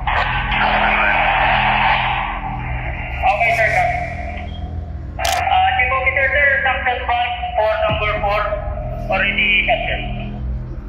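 Men's voices calling to each other in an echoing steel tank, over background music with a steady low drone.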